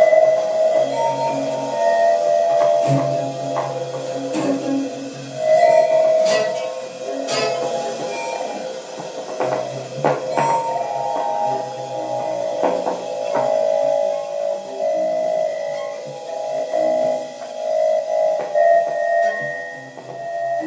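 Live free-improvised music from a quartet of baritone saxophone, cello or trombone, synthesizer and percussion: long held tones over shifting low notes, broken by scattered sharp clicks and strikes.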